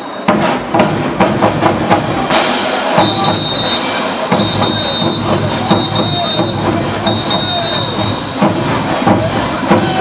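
A caporales brass band and drums strike up just after the start, over the jingling of the bells on the dancers' boots. Several long, high whistle blasts sound between about three and eight seconds in.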